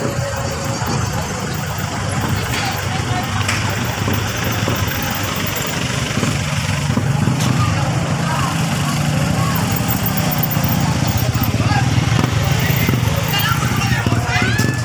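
Motor vehicle engines running at close range, a truck and motorcycles passing slowly, with people's voices around. The sound is steady throughout and grows a little louder toward the end.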